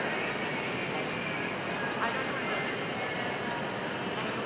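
Steady background roar of a large indoor arena with indistinct voices mixed in, and a single sharp click about two seconds in.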